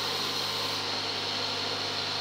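Steady background hum and hiss, like a fan or small motor running, with no distinct events.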